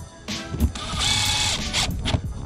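Cordless drill driving a screw through a speaker grille into a trailer wall, in short runs with a longer run about a second in.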